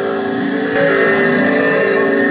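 Experimental electronic music: several held, steady tones layered over an even hiss.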